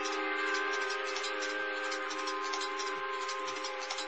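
Electronic drone of several steady held tones over a hiss. From about a second and a half in, short low tones drop in pitch about four times, coming closer together toward the end.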